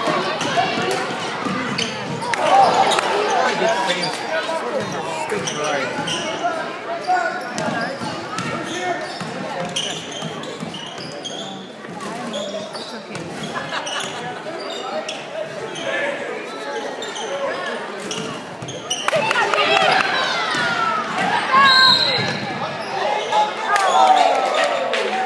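A basketball being dribbled, with sneakers squeaking on the court and crowd voices echoing through a gym. A referee's whistle blows briefly near the end, calling a foul.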